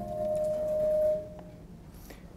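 A single steady ringing tone that swells for about a second and then fades out.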